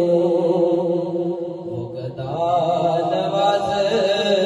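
A man singing a kalam into a microphone in long, drawn-out notes, without clear words. The voice falters briefly about two seconds in, then takes up the melody again.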